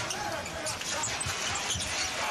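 A basketball being dribbled on a hardwood court, a dull thump about every half second, over steady arena crowd noise.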